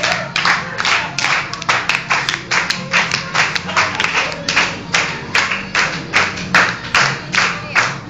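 A group of people clapping in unison to a steady beat, about three claps a second, over music.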